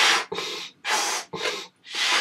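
A person blowing up a latex balloon by mouth: quick, hard breaths in and out, each about half a second, about one breath in and one blow out each second.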